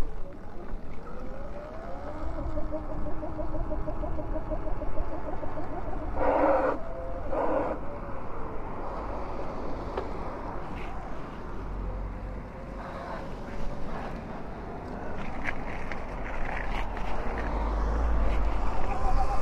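Electric dirt bike's motor whining while riding, its pitch rising and falling with speed, over a steady wind rumble on the microphone. Two short, louder sounds break in about six and seven and a half seconds in.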